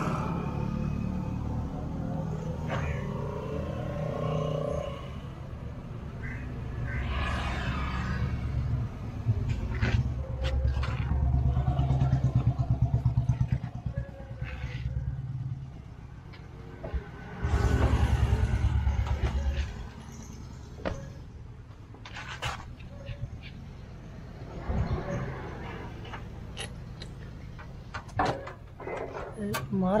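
A vehicle engine running nearby, loudest in two stretches of a few seconds each near the middle, with sharp metallic clicks and background voices.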